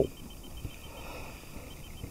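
Low, even outdoor background noise with no distinct event, apart from a faint click about two-thirds of a second in.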